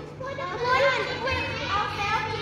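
A group of children calling out answers together, several young voices overlapping.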